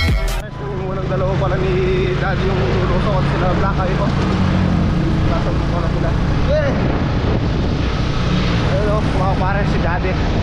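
Motorcycle with sidecar running steadily on the road, its engine note mixed with wind and road noise, with voices heard through it.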